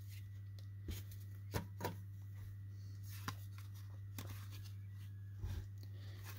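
Topps baseball trading cards being flipped through by hand: a handful of faint, short taps and slides of card stock against the stack, scattered across the stretch, over a steady low hum.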